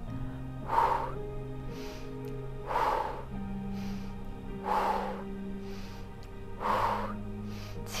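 A woman's audible breaths, four in all about two seconds apart, over slow background music of long held notes.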